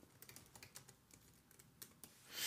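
Faint, quick typing on a computer keyboard, a rapid run of light key clicks, with one slightly louder keystroke near the end.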